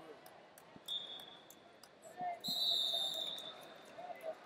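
Wrestling in a large hall: a couple of dull thuds of heavy bodies hitting the mat about two seconds in. There are two high, steady whistle tones, a short one about a second in and a louder one lasting about a second just after the thuds, over faint distant voices.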